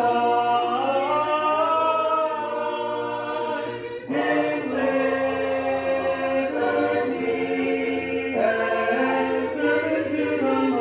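Congregation singing a hymn a cappella in many voices, holding long notes, with a brief breath between lines about four seconds in.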